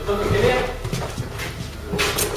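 Indistinct voices of people moving close to a handheld phone, with low bumps and rustle from the phone being handled against clothing.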